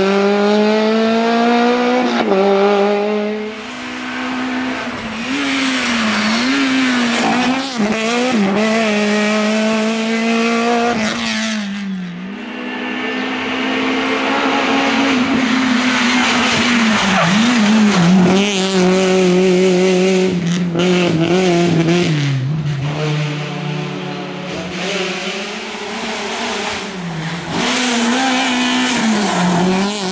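Suzuki Swift rally car's engine revved hard through tight corners, its pitch climbing and dropping again and again as the driver accelerates, lifts and changes gear, with tyres squealing on the tarmac.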